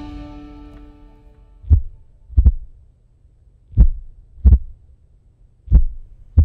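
A short music jingle fades out. Then comes a slow heartbeat: three deep lub-dub double thumps, about one every two seconds.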